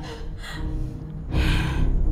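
Tense drama background music with low sustained tones. About 1.3 s in there is one sharp, breathy gasp from a young woman who is hurt and upset.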